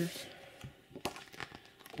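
Paper rustling with a few faint clicks as a printed paper inner sleeve is slid out of a gatefold cardboard LP jacket.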